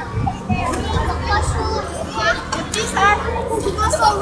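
Children playing: many young voices calling out and chattering over one another, over a steady low hum.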